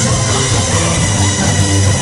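A live band, with synth keyboard, bass guitar and drum kit, playing an instrumental passage with a steady beat.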